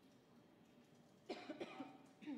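A woman, the live blackjack dealer, coughing briefly, starting a little past a second in.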